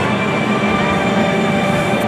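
Steady din of a crowded indoor sports hall, with several held tones running through it.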